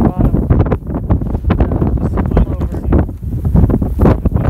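Wind buffeting the microphone: a loud, gusting low rumble with irregular thumps, and a few words of speech just after the start.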